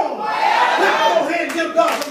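Several voices of a church congregation calling out together in response to the preacher, overlapping one another.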